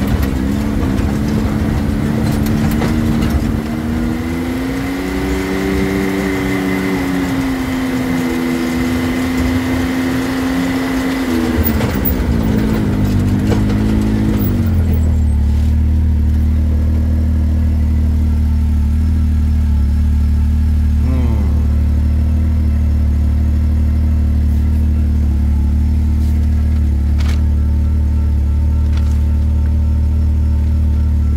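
Side-by-side UTV engine running as it drives along a dirt forest track, its pitch rising and falling with the throttle. About halfway through it slows to a stop and settles into a steady idle.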